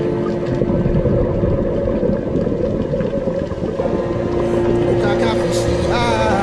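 Muffled underwater rumble, with a steady low hum running underneath.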